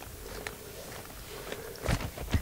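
Faint scraping and handling noises of a knife cutting along the belly of a dead fish on newspaper, with a sharper knock near the end.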